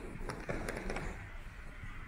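Indoor gallery ambience: a low murmur of distant visitors' voices, with a short run of sharp clicks or taps about half a second in.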